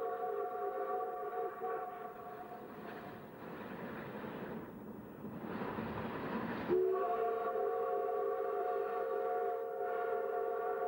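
Mikado steam locomotive's whistle sounding a long chord of several notes. Midway it gives way to a rush of steam and running noise, then the whistle comes back abruptly and louder about seven seconds in, its lowest note sliding up slightly at the start.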